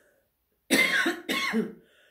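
A woman coughing twice in quick succession.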